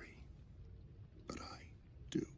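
Low room tone with one short, breathy voice sound, like a whispered syllable or sigh, about a second and a half in.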